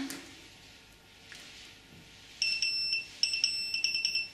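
AntiLaser AL Priority laser jammer's electronic beeper sounding a run of short, high beeps of one pitch in two quick groups, starting over halfway in, as the unit powers up without its USB key into parking-only mode. A faint click comes about a second in.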